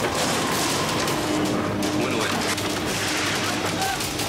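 Action-film soundtrack: a dense run of rapid gunfire over tense music, with a faint held note underneath for most of it.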